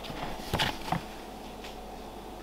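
A few soft scuffs and taps as a ball python is settled into a plastic tub, all within the first second, then quiet room tone.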